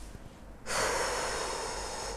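A person's loud breath out, a single hiss about a second and a half long that starts abruptly under a second in.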